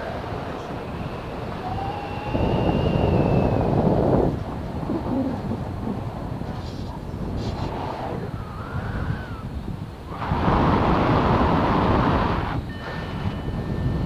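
Wind rushing over the microphone of a camera on a tandem paraglider in flight, swelling into two louder gusts lasting about two seconds each: one about two seconds in, the other about ten seconds in.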